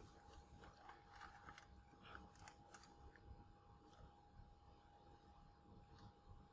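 Near silence: faint room tone with a thin steady hum, and a few soft clicks and ticks in the first three seconds.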